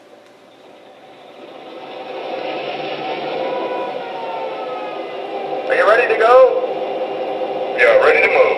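Digital sound system of an MTH Premier O gauge BL2 diesel model, through its onboard speaker: a diesel engine sound builds up over the first couple of seconds and settles into a steady idle. A short radio-style crew voice breaks in about six seconds in.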